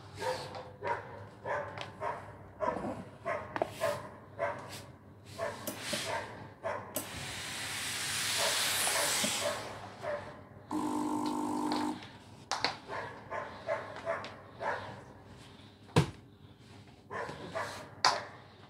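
Floor steam mop letting out a burst of steam with a loud hiss for about three seconds midway, followed by about a second of steady buzzing. Short sharp sounds come and go before and after.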